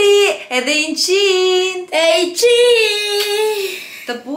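Voices singing in long held notes, about three of them drawn out for roughly a second each, with shorter notes between.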